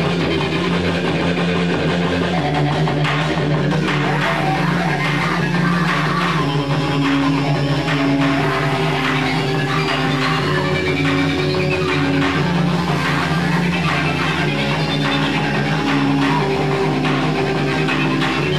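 Live noise-rock band playing loud, dense amplified music, with held low notes under a short higher note that keeps repeating.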